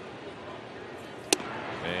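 Steady ballpark crowd noise, then about a second and a third in a single sharp pop as a 94 mph sinker lands in the catcher's mitt for a ball.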